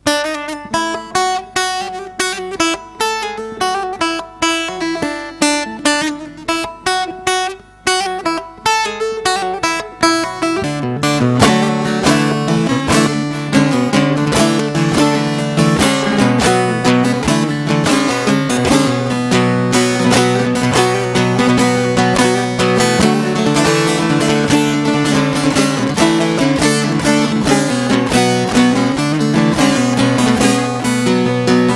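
Bağlama (long-necked Turkish saz) playing the instrumental opening of a Giresun folk song: separate plucked notes for about the first ten seconds, then fast continuous picking over a steady low drone to the end.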